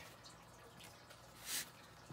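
Mostly quiet, with one brief rustle of the cloth shipping bag being pulled by hand about one and a half seconds in.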